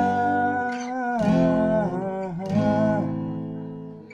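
Acoustic guitar played in single chord strokes, a new chord about every second and a quarter, with a voice singing long, held, gliding notes of the melody over it.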